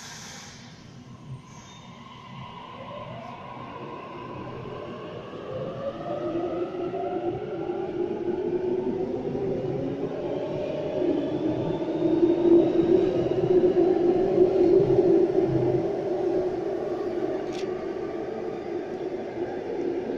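Sydney Trains Waratah (A set) electric train pulling out of an underground station: its traction motors whine, rising in pitch as it accelerates, while the running noise builds to its loudest about twelve seconds in and then eases as it leaves. A brief hiss opens the sound.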